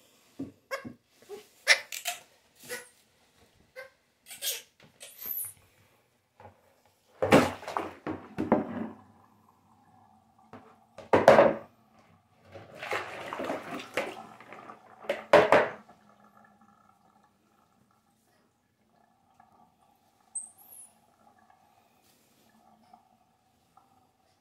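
Water from a small plastic washtub splashing into a bathroom sink, poured out four times in quick succession, after a few short knocks and squeaks. A single high chirp, typical of a baby squirrel monkey, comes near the end.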